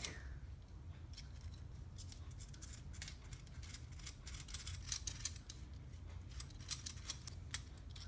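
Small screwdriver turning a 10 mm screw into a Tamiya Mini 4WD AR chassis, with the plastic parts handled: a run of faint, quick clicks and ticks.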